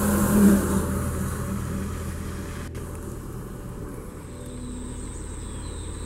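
A car's engine and road noise, louder in the first second, then fading to a steady low hum.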